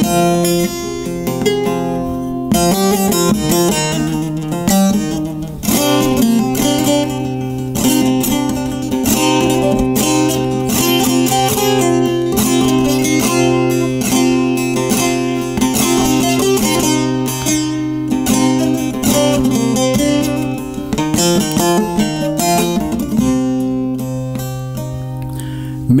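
Bağlama (long-necked Turkish saz) playing an instrumental interlude of quick plucked, strummed notes over a steady low drone.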